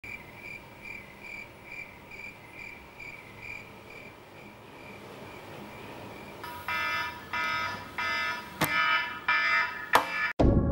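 Electronic alarm clock beeping, high and a little over twice a second, fading away after about four seconds. From about six and a half seconds in, repeated synthesizer chord stabs take over, with a sharp click near the end.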